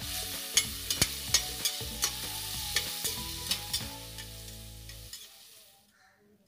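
Sliced onions sizzling as they fry in a pressure cooker, stirred with a slotted spatula that clicks and scrapes against the pot about a dozen times. The sizzling fades out near the end.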